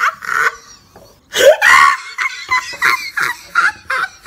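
A woman laughing and making short vocal sounds, with a brief pause about a second in before a louder run of laughter.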